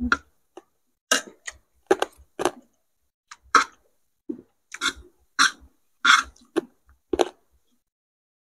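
Eating sounds: about a dozen short, irregular clicks and crunches from spoons and forks against plates and chewing of fried food, with no speech.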